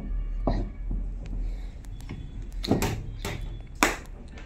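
A few knocks and clicks of a small sewing-machine motor and its foot-pedal regulator being handled and set down on a workbench, the loudest just before the end, over a low steady hum.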